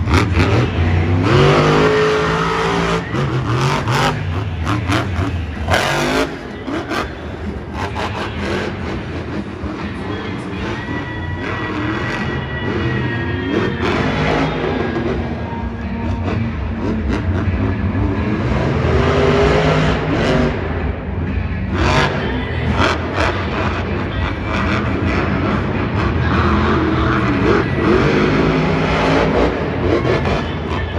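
Monster Energy monster truck's supercharged V8 engine revving hard in repeated surges, its pitch climbing and falling as it drives and jumps, with a few sharp bangs.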